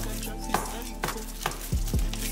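Kitchen knife knocking lightly against a plastic cutting board while cutting raw chicken, about five uneven knocks, over soft background music.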